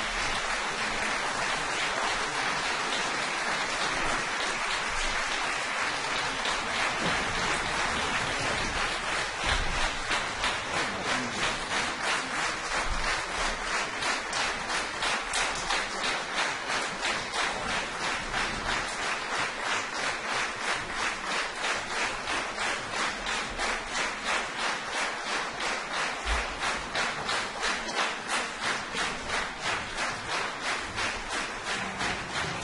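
Concert audience applauding. The scattered clapping falls into a steady rhythmic clap, a little over two claps a second, from about a third of the way in.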